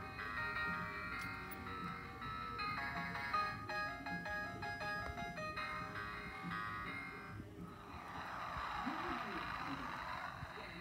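Peanuts singing animated Snoopy plush toy, switched on by pressing its paw, playing a tinny electronic Christmas melody through its small speaker. The melody stops about seven and a half seconds in and gives way to a rushing hiss.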